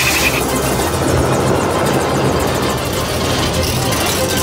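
Helicopter running, its rotor chop and engine noise steady, with film score music playing alongside.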